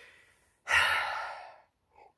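A man breathes out audibly in a long sigh lasting about a second, after a faint breath in.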